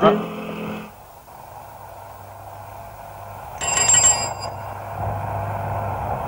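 A short, high ringing like a bell, lasting under a second, about three and a half seconds in, over a low steady hum.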